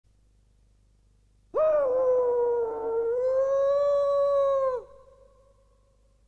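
A single long note held at one pitch for about three seconds, with a quick upward slide as it starts and a fall and short echo as it ends.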